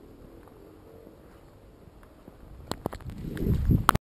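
Handling noise on a handheld camera: a few sharp clicks and knocks, then a louder low rumble with heavy thumps that cuts off suddenly at the end.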